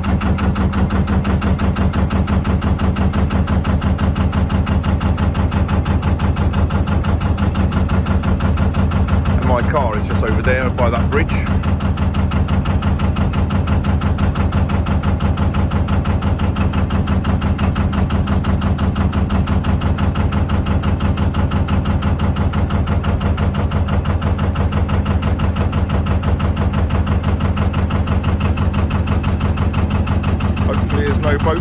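Narrowboat's inboard diesel engine running steadily while cruising, with an even, rapid pulse.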